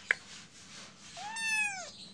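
A kitten meowing once, a single long meow of under a second that rises in pitch and then falls, coming about a second in. A short faint click sounds just at the start.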